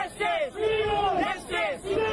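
A crowd of supporters chanting a political slogan in unison: loud, drawn-out phrases that repeat, with short breaks between them.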